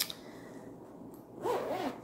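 A single click, then the zipper of a vinyl project bag being pulled briefly near the end.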